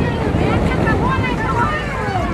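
Wind buffeting the microphone with a steady low rumble, over the chatter of many people's voices.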